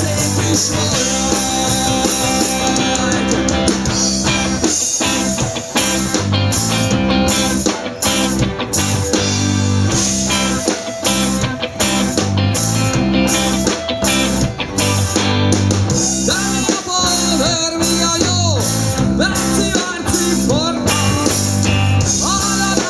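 Live rock band playing a song with bass guitar, electric guitars and a drum kit keeping a steady beat, amplified through a stage PA.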